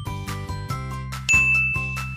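Light children's background music, with a bright chime sound effect about a second in that rings on as a held high tone, marking the next paint colour coming up.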